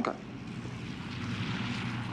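Propeller aircraft engine running steadily in the background of an old film soundtrack, a dull drone under a hiss, growing slightly louder.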